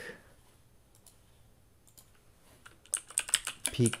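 Typing on a computer keyboard: a few faint clicks, then a quick run of keystrokes about three seconds in.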